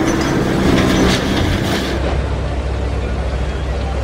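Diesel engines of demolition machinery running, with crashing masonry and debris in the first couple of seconds. After a cut, a low steady engine rumble.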